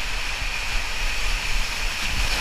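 Water rushing down a water-slide tube as a rider slides through it: a steady hiss with a low rumble underneath.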